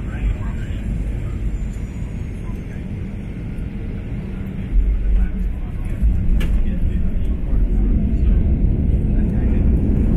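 Airliner cabin noise during the roll along the runway: a steady low rumble of engines and wheels that steps up louder about five seconds in and stays up.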